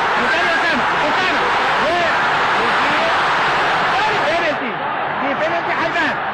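Football stadium crowd: a dense, steady din of many voices, with single voices calling out above it.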